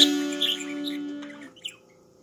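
An acoustic guitar chord strummed once and left to ring, fading out over about a second and a half, while a budgerigar gives a few short high chirps over it, the last one near the end once the guitar has died away.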